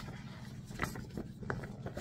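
Faint handling noise of a paper pattern leaflet and a softcover pattern book being moved about, with a few soft ticks and rustles.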